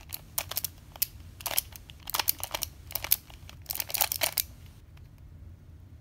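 Skewb puzzle being turned by hand: groups of sharp plastic clicks as its halves twist and snap into place, running through a Z-perm algorithm, stopping about four and a half seconds in.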